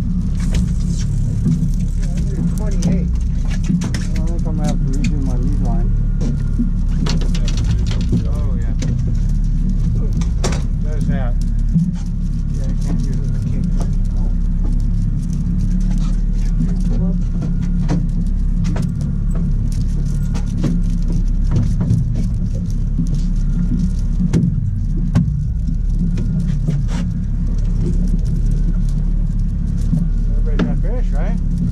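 A boat's outboard motor running steadily with a constant low drone. Light clicks and rattles of fishing gear being handled sound over it, with a few low voices early on.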